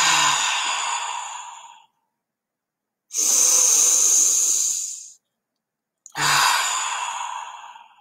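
A woman taking slow deep breaths: three long breaths of about two seconds each, with about a second of silence between them. The first and last begin with a brief voiced sigh.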